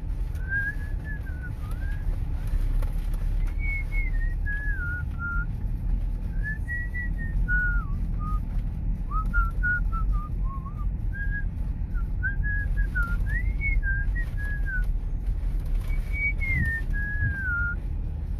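A person whistling a wandering tune in short phrases, over the steady low rumble of a car driving, heard from inside the car.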